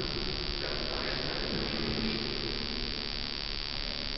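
A pause in the speech: steady background noise of a large, reverberant church hall, with no clear voice.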